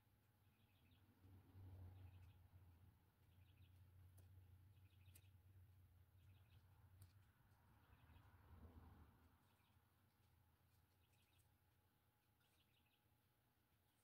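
Near silence: faint room tone with a very faint high chirp repeating about once a second.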